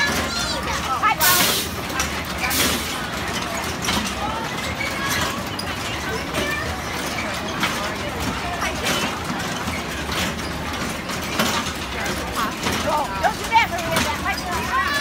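Indistinct voices of children and adults chattering over the steady low rumble of a kiddie carousel ride running. There are two short hissing noises within the first three seconds.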